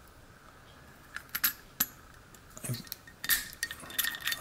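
Key being worked into a five-pin pin-tumbler lock cylinder and turned: a few sharp metallic clicks a second or so in, a dull knock, then a quicker run of clicks near the end as the key turns the plug.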